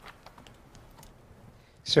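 Faint, scattered clicks and taps in a quiet room.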